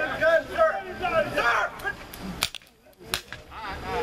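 Raised voices, then about two and a half seconds in a quick string of sharp pops: shots fired in a police training scenario at a role-player holding a gun.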